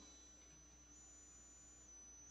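Near silence: room tone with a faint steady high-pitched tone.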